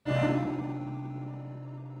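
Resynthesized piano-chord loop played by Logic's Alchemy additive synth, with the partials built from triangle waves instead of sine waves: a sustained synth chord that starts at once and slowly fades, with a slightly sharper tone.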